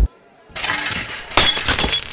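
Dishes and glassware crashing and shattering as a tablecloth is yanked off a table. The crash begins about half a second in, with ringing, clinking glass at its loudest past the middle.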